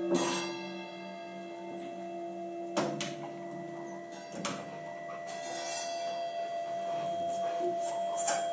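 Sparse free-improvised music from a saxophone, cello, percussion and synthesizer quartet: long held tones, a low pair giving way about three seconds in to a higher steady tone, with a few sharp percussion strikes scattered through.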